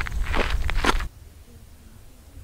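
Footsteps on dry dirt ground with wind rumbling on the microphone, cutting off abruptly about a second in. What follows is much quieter, with faint distant voices.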